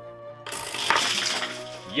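Small LEGO spring-loaded shooters firing together as a LEGO brick weight drops down the guide behind them: a quick rattle and clatter of plastic parts starting about half a second in, with a sharp crack about a second in.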